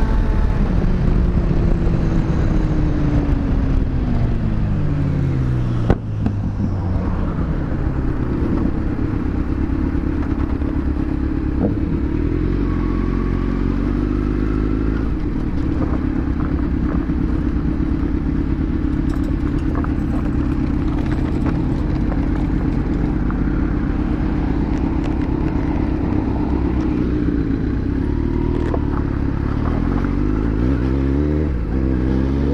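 Motorcycle engine slowing down, its pitch falling over the first few seconds, with a sharp clunk about six seconds in. It then idles steadily for most of the time, and the revs start to rise again near the end as the bike moves off.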